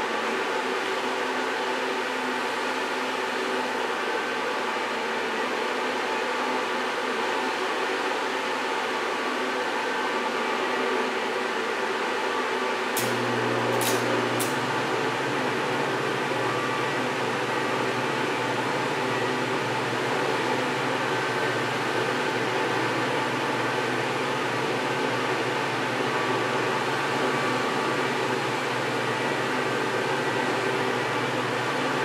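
A small blower fan runs steadily alongside AC stick welding with E6011 rod. About 13 seconds in come three sharp clicks, then a low steady hum joins and stays.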